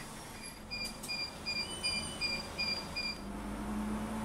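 An electronic warning beeper in a city bus's cabin sounds a rapid run of short, high-pitched beeps, about three a second, stopping about three seconds in. A low, steady engine hum comes up near the end.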